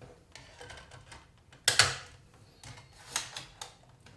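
Irregular clicks and knocks from the Dell Inspiron 3800 laptop being handled, with the loudest knock near the middle.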